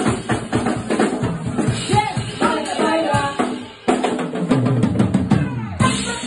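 A live jazz band playing with a busy drum-kit beat under pitched instruments. The music drops away briefly about four seconds in, then comes back with strong low bass notes.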